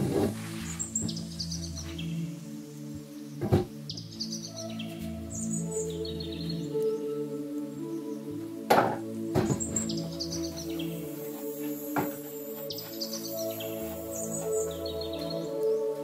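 Calm background music with bird-chirp sounds recurring in its pattern. Over it come a few sharp knocks as a metal bar stool is handled and wiped, the loudest about nine seconds in.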